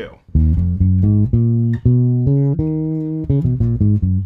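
Four-string electric bass guitar playing an E-flat natural minor scale as single plucked notes. The notes climb step by step, hold one longer note, then move in quicker notes near the end.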